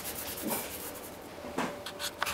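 Faint rubbing and a couple of soft taps as an iced sugar cookie is moved and jiggled on a cloth-covered table to level the wet icing.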